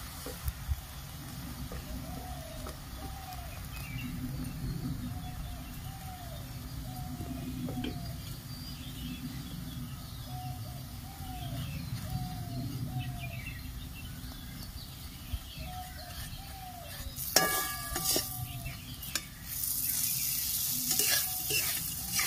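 An aloo paratha frying in oil and butter in a metal kadai, sizzling steadily. From about two-thirds of the way through, a metal spatula clicks and scrapes against the pan as it presses the paratha, and the sizzle grows louder and brighter.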